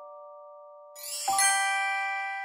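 Bell-like chime music from a cartoon soundtrack: a held chord fades away, then a bright glockenspiel-like chime chord is struck about a second in and rings on.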